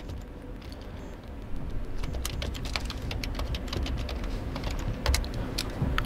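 Typing on a MacBook Air M4 keyboard: a quick run of key clicks for a few seconds, as a password is typed in.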